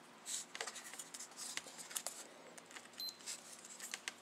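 Faint handling sounds: small plastic clicks and rustles as a test strip is pushed into a Relion Premier blood glucose meter, with one short high beep about three seconds in as the meter switches on.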